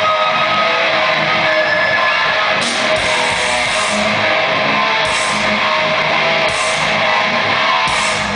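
Thrash metal band playing live, loud distorted electric guitars over drums, with cymbal crashes recurring about every second and a half from a couple of seconds in.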